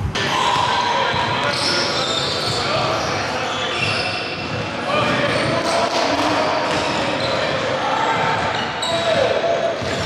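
A basketball bouncing on a hardwood gym floor during a pickup game, with players' indistinct voices in the echoing hall.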